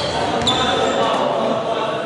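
Live basketball-hall sound: players' voices echoing in the large gym, with a basketball bouncing on the hardwood court.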